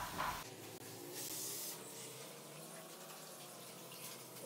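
Bánh xèo batter frying in a covered pan, a faint steady sizzling hiss that swells briefly about a second in, while the crêpe crisps.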